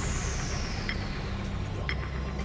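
Game-show clock sound effect ticking about once a second over a steady low drone, with a faint high tone sliding slowly down in pitch.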